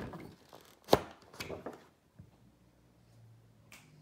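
Paper rustling and sharp taps as a large spiral-bound flip-chart page is turned over and settles; the loudest, sharpest tap comes about a second in. After about two seconds only a faint low hum is left.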